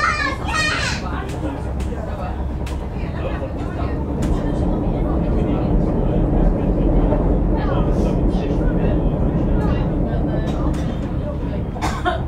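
Steady low rumble of a commuter train running on the rails, heard from inside the carriage, with scattered clicks from the track. It grows louder for several seconds in the middle, while the train crosses a steel truss bridge. Passengers' voices are heard briefly at the start and again later.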